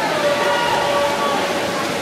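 Spectators yelling and cheering on swimmers in a race, one voice holding a long, high shout over the steady din of the crowd.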